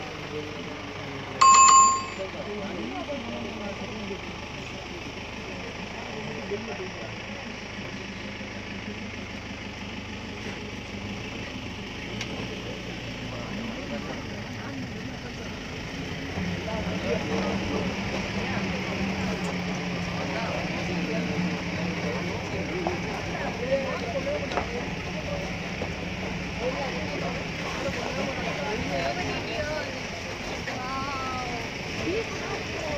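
A single bright bell-like ding about one and a half seconds in, over the murmur of people talking; a steady low hum like an idling vehicle engine joins about halfway through.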